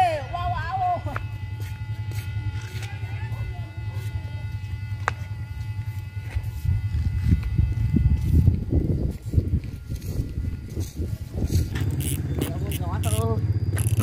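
Bamboo flutes (sáo) on a Vietnamese flute kite flying high, sounding several steady whistling tones together like a chord that fade out about two-thirds of the way through. A heavy low wind rumble on the microphone runs under them.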